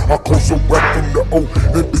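Chopped and screwed gangsta rap track: slowed, pitched-down rap vocals over heavy bass, with a snare hit just under a second in.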